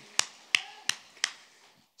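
A man clapping his hands four times, evenly spaced at about three claps a second, close to the microphone.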